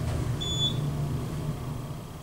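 Hydraulic elevator car descending, a steady low rumble that fades as the car slows to a stop near the end. A short high beep sounds about half a second in.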